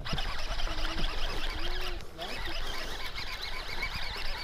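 Small ripples lapping against a drifting boat's hull, a steady soft splashing, with a faint voice in the background.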